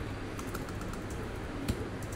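A few faint, irregular light clicks over a steady low room hum.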